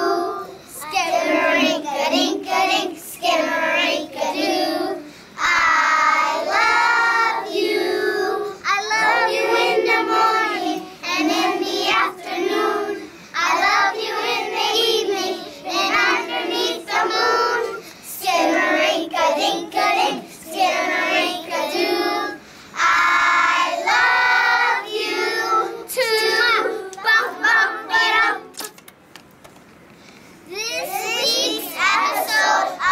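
A group of young children singing a song together in unison, the singing stopping shortly before the end.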